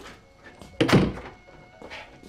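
A heavy thump about a second in, followed by a lighter knock near the end.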